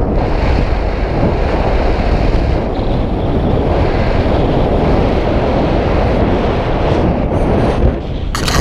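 Wind noise from the rush of air over the camera's microphone during a tandem paraglider flight: a loud, steady rushing with no break.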